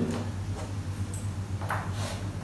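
A steady low hum under faint rustling, with one brief soft scrape or tap near the end.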